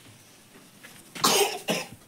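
A person coughing twice, a little past a second in, the first cough longer than the second.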